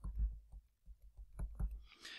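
Faint, irregular clicks and taps of a stylus tip on a tablet screen during handwriting.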